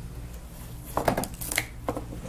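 A few short clicks and rustles of things being handled on a workbench, about a second in and again near the end, over a steady low hum.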